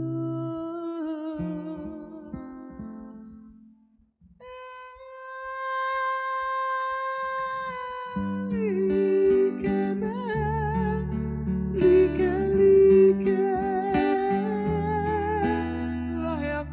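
A man singing to his own acoustic guitar. The strumming fades to a brief pause about four seconds in, a long held note follows, and then strummed chords return under his voice.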